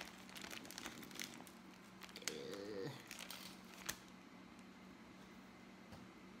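Faint crinkling and rustling with a few light clicks as raw bacon strips are taken from their packaging and laid on a wire rack. It quietens over the last two seconds.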